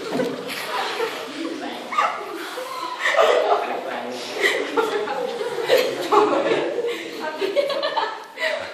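Girls' voices talking indistinctly and chuckling.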